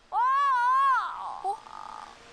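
A woman's drawn-out, high-pitched exclamation of "oh!", about a second long with its pitch rising and then falling, followed by a short "uh".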